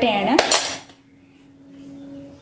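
Metal spoon scraping and clinking against a metal pot and coconut shell while scooping rice flour, loud and squeaky for under a second with a couple of sharp clinks. After that, only a faint steady hum remains.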